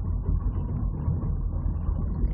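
Car driving along the motorway, heard from inside the cabin: a steady low rumble of engine and tyre noise.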